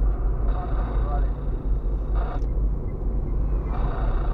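Steady low rumble of a car driving on the road, heard from inside the cabin: tyre and engine noise.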